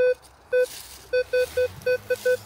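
Minelab Vanquish 540 metal detector sounding a target: about six short beeps of the same mid pitch, irregularly spaced, as the coil is swept back and forth over the spot.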